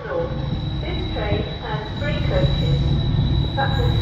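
Diesel freight locomotive hauling tank wagons, its engine running with a heavy low rumble that grows slightly louder as it approaches, and a thin steady high whine over it. A voice is heard intermittently over the train.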